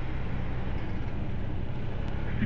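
Honda ADV 160 scooter's single-cylinder engine running at low road speed, heard with wind and road noise: a steady low rumble.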